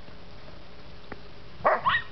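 A dog gives one short bark near the end, rising in pitch.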